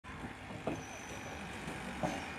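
Steady background noise of road traffic, with one brief knock about two-thirds of a second in.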